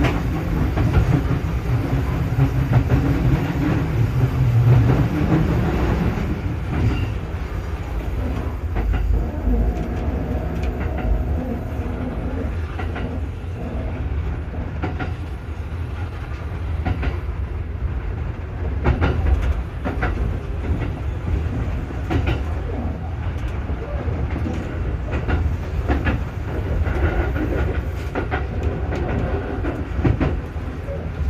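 Kintetsu train running, heard from inside on the front deck behind the driver: a steady rumble of wheels on rail, with a hum over the first few seconds. After that come irregular clicks as the wheels pass rail joints and the points of the junction.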